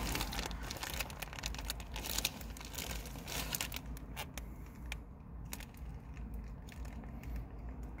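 Plastic packaging crinkling and crackling as a Lunchables pizza sauce packet is opened and handled over its plastic tray. The crackles are dense for the first few seconds, then thin to scattered ticks.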